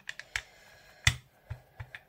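Small rubber brayer rolled back and forth over soft gel medium on a gel plate, giving a handful of sharp clicks and ticks, the loudest a little after a second in.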